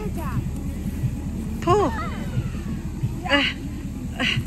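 Young children's high-pitched voices: a short call that bends up and down about two seconds in, and another near the end, over a steady low rumble.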